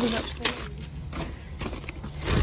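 Plastic bags and snack packaging rustling and crinkling as they are handled, with a couple of short knocks.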